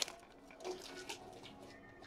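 Faint, soft rustling of a stack of trading cards being slid and handled between the fingers.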